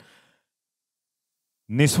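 A pause in speech: a spoken phrase trails off at the start, then there is dead silence for over a second, and talking resumes near the end.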